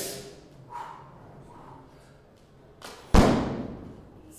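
A weightlifter's feet stamping onto a wooden lifting platform as he drops into the split under a 135 kg clean-and-jerk barbell. One loud, sharp thud comes about three seconds in and rings on briefly before fading.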